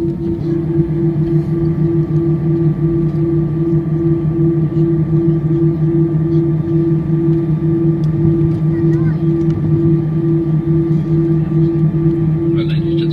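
Cabin noise of an easyJet Airbus A319-111 with CFM56 engines rolling out after landing: a loud, steady engine drone with a low tone that pulses about twice a second, and a fainter higher whine coming in about half a second in.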